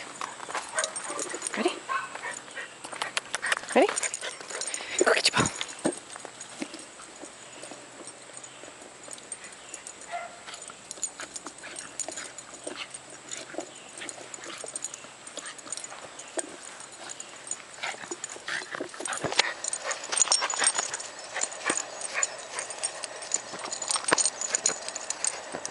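A small dog giving short excited yips and whimpers at play, scattered through with sharp clicks and knocks.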